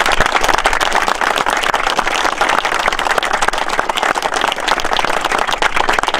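A small group of people applauding, many hands clapping together in a dense, even patter.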